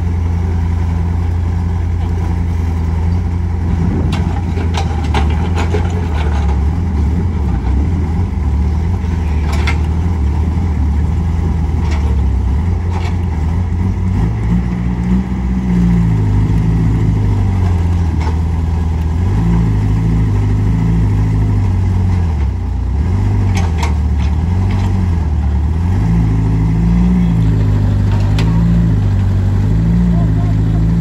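Diesel engine of a CAT mini excavator bogged in mud, running steadily and then, from about halfway, rising and falling in pitch as it is worked hard under load. Occasional sharp knocks are heard over it.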